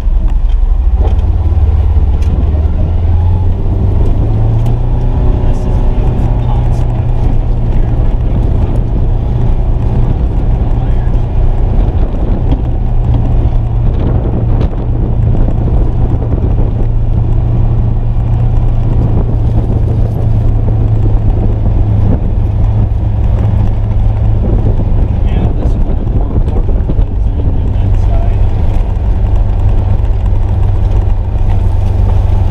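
Polaris Ranger XP 1000 Northstar UTV's twin-cylinder engine and drivetrain running steadily at low speed over rough field ground, heard inside the enclosed cab. The engine note rises slightly about four seconds in.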